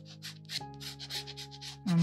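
Glass dip pen scratching on paper in quick back-and-forth scribble strokes, about five a second, over soft background music.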